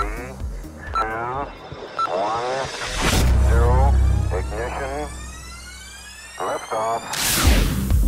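Countdown sound effect: a processed voice counts down over a short beep each second. A deep rumble starts about three seconds in, rising swept tones follow, and a loud blast-like burst comes near the end.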